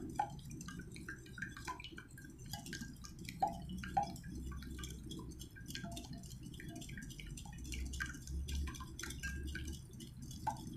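Raw eggs being beaten in a ceramic bowl with a metal utensil: faint, irregular wet clicks and splashes as the utensil strikes the bowl and stirs the egg, several a second.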